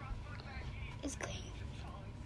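A faint voice speaking softly, with a couple of short clicks about a second in, over a steady low hum.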